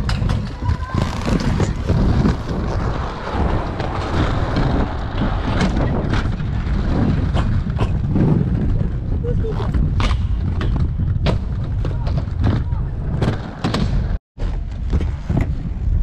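Aggressive inline skate wheels rolling over concrete ramps, with heavy wind rumble on the microphone and scattered sharp clacks of the skates striking the surface. The sound cuts out for a moment near the end.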